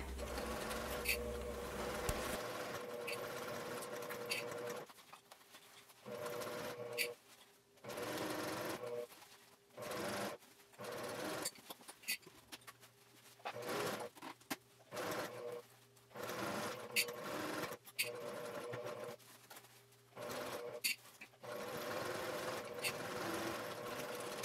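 Domestic sewing machine stitching a seam through layers of fabric and foam interfacing. It runs steadily for about the first five seconds, then in a string of short runs with brief stops between them, with a few light clicks.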